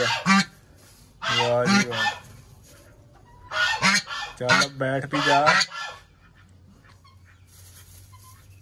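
Domestic goose honking: a short bout of calls about a second in, then a longer broken string of honks a couple of seconds later.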